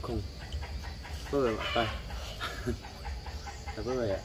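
Chickens clucking, with a few short calls about a second and a half in.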